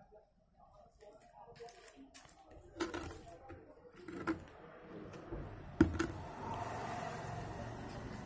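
A few light knocks and clicks from the plastic filter container being handled, the sharpest about six seconds in, followed by a steady soft rushing noise.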